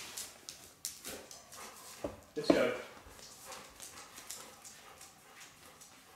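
Footsteps and a Labrador's claws clicking on a tiled floor as the dog walks at heel, with a sharp knock about two seconds in and a brief louder sound just after.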